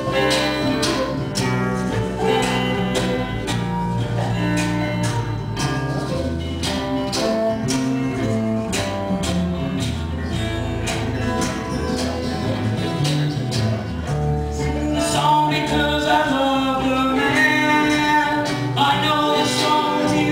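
Live acoustic band playing a folk-rock song: strummed acoustic guitars, bass and mandolin, with a steel folding chair played with brushes as percussion keeping a steady beat.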